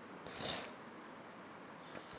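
A man's short breath drawn in through the nose about half a second in, soft and close to the microphone, over faint steady room hiss.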